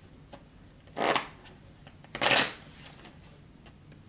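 A deck of tarot cards being shuffled by hand: two short bursts of shuffling about a second apart.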